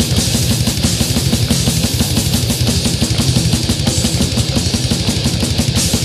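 Brutal death metal: heavily distorted guitars over rapid, evenly repeating drum hits.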